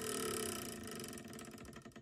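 A plastic board-game spinner wheel spinning down. Rapid clicks against its pointer with a falling whir, slowing and fading until it stops near the end.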